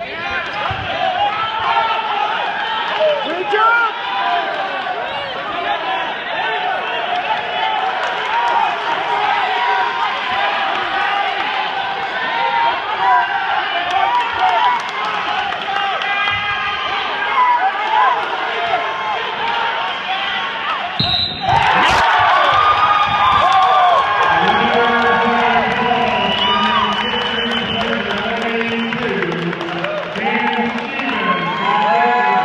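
Spectators in an echoing gym yelling and shouting encouragement at a wrestling bout. About 21 seconds in comes a sharp slap with a brief high whistle, after which the shouting grows louder: the referee signalling the end of the bout.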